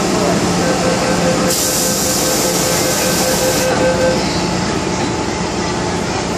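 MTR M-Train door-closing warning: a run of rapid, evenly pulsing beeps for about three and a half seconds while the passenger doors slide shut, with a hiss for about two seconds in the middle. The car's ventilation hums steadily underneath.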